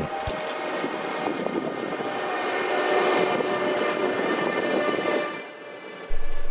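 Siemens Desiro HC electric multiple-unit train running through a station: a steady rush of wheels on rail with a faint steady whine. It grows a little louder toward the middle and fades out about five seconds in.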